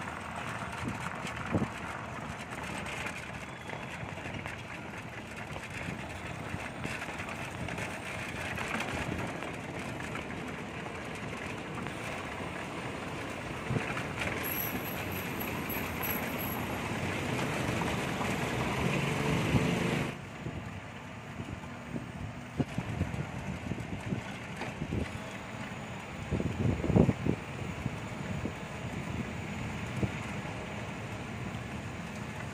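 Rolling road noise and surrounding traffic heard from a moving pedal trishaw, a steady din with scattered knocks and rattles, most of them bunched together near the end.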